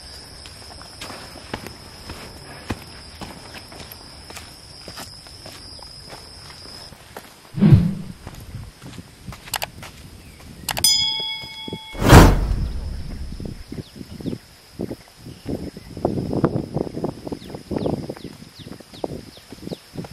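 Footsteps of hikers walking up a dirt mountain trail. A steady high insect chirp runs through the first third, and two louder thuds come about eight and twelve seconds in.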